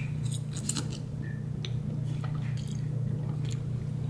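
A man chewing a mouthful of spaghetti, with scattered faint clicks and wet mouth sounds, over a steady low hum.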